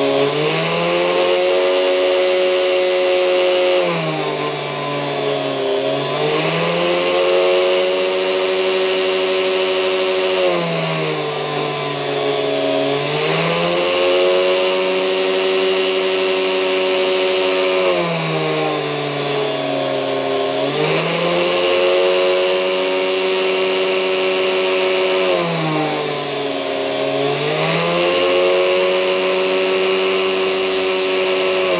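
Hilda rotary tool running a small drill bit through a flexible shaft and mini drill chuck, cross-drilling a brass bar. The motor's pitch sags and recovers about every six to seven seconds as the bit bites into the brass under load.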